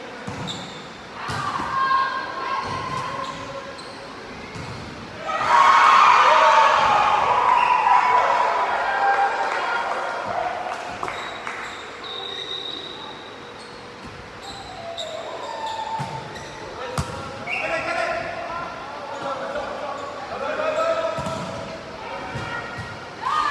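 Volleyball rallies echoing in a large sports hall: players' shouted calls in bursts, the loudest and longest about five seconds in, with the sharp smacks of the ball being served, passed and hit.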